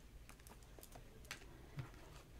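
Near silence with a few faint, irregular clicks and taps as tarot cards are drawn from the deck and handled.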